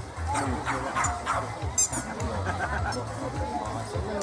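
A dog barking a few times in quick succession over background chatter, with a brief high squeak at about two seconds.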